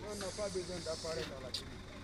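Voices talking over a hiss. The hiss fades out a little over a second in.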